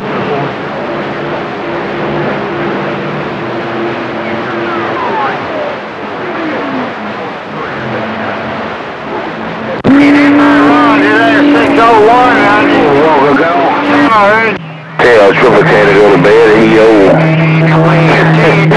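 CB radio receiver on channel 28 picking up skip: band hiss and static with steady heterodyne tones and one whistle sliding down in pitch. About ten seconds in, a strong incoming transmission takes over, a loud warbling, garbled voice-like signal that drops out briefly and comes back.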